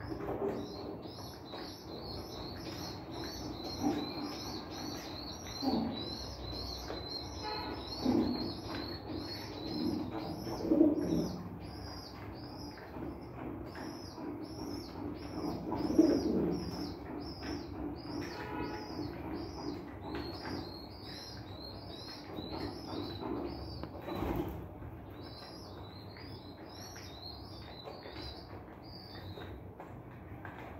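Pigeon squabs begging while an adult pigeon feeds them beak-to-beak: a rapid, steady string of high squeaky peeps, briefly stopping near the end. Several louder bursts of fluttering and jostling in the nest pot come through under the peeps.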